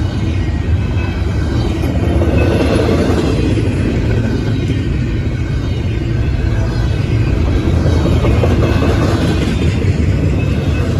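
Double-stack intermodal freight train's well cars rolling past at close range: a steady, loud rumble of steel wheels on the rails.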